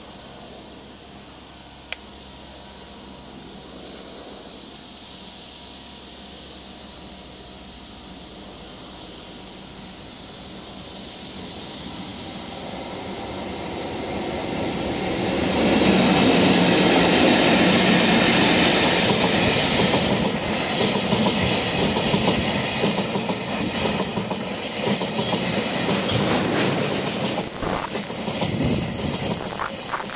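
Freight train headed by two EF64 electric locomotives approaching and growing steadily louder, then passing close at speed about halfway through. Its Taki tank wagons follow, clattering rhythmically over the rail joints.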